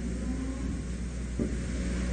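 Pause in a sermon: only the steady hiss and low hum of an old recording's background noise.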